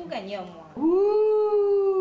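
One long, drawn-out, meow-like wailing call, held about a second and a half. It rises quickly at the start and sinks slowly in pitch toward its end.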